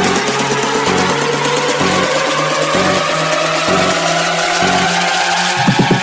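Electronic dance music in a build-up: a synth sweep rises steadily in pitch over a stepping bass line. Fast repeating hits come in near the end.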